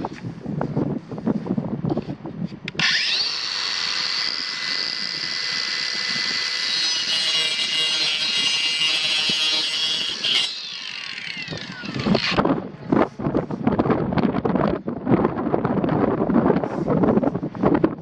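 Kobalt 24-volt brushless 4-inch cordless circular saw starting about three seconds in with a rising whine. It runs for about seven seconds at a steady high pitch while cutting across PVC pipe, then winds down with a falling whine. Uneven rustling noise comes before the start and after the saw stops.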